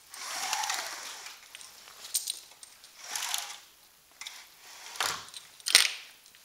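Horizontal window blinds being handled: the slats rattle and clatter in several short bursts, with a sharp clack near the end.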